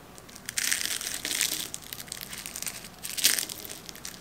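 Fork cutting down through crisp, flaky apple strudel pastry, the thin layers crackling and crunching: a long stretch of crackling from about half a second in, then a shorter, sharper crunch about three seconds in.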